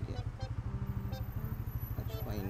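Motorcycle engine running at low revs as the bike creeps through slow traffic, a steady, rapid low pulsing.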